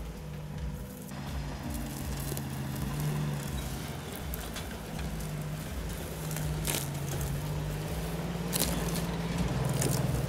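Jeep CJ7 engine running under load as the Jeep crawls up a brushy slope, its revs rising and falling. Sharp crackles of brush and scrapes under the tyres, the clearest about two-thirds of the way in and again near the end.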